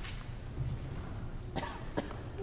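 A single short cough about a second and a half in, over the low hum of a quiet concert hall.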